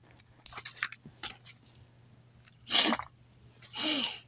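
Handling noise as a strap buckle is undone and paper and cloth are moved: a few small clicks, then two short crinkly rustles.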